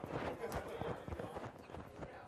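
Indistinct chatter in a room, with a quick run of clattering knocks in the first second and a half.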